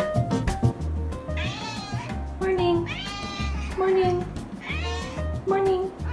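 Domestic cat meowing repeatedly, about five rising-and-falling meows in quick succession.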